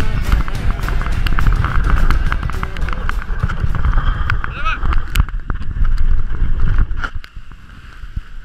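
Steady rumble of wind and wheels rolling over the trail, with rattling clicks, as a dog-drawn scooter runs behind a team of dogs. The rumble drops away sharply about seven seconds in.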